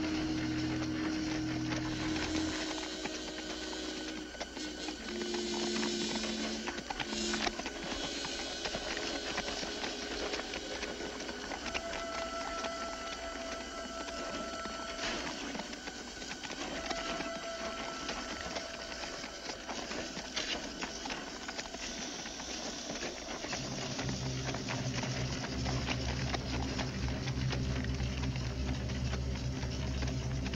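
Orchestral film score underscoring a tense scene, built on long held notes over a busy, ticking texture; deep bass notes come in about three-quarters of the way through.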